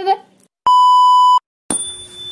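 A single loud, steady electronic beep at one high pitch, lasting under a second, cut in cleanly with silence either side like a censor bleep. About a second later a hissing sound with faint steady tones begins.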